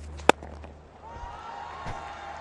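Cricket bat striking the ball once, a single sharp crack about a third of a second in, over low, steady stadium background.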